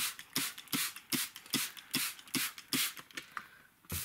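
Plastic trigger spray bottle spritzing the soil of a seed tray: a quick, even series of short sprays, about two or three a second, stopping about three seconds in.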